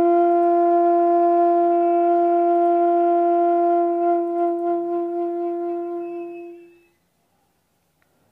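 Bamboo bansuri (side-blown flute) holding one long, steady note that fades away and stops about seven seconds in.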